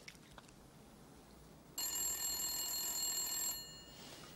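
Telephone ringing: one ring of just under two seconds, starting about halfway in and fading at the end.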